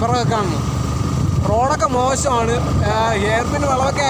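A man talking over the steady low rumble of a moving motorcycle, with wind on the microphone.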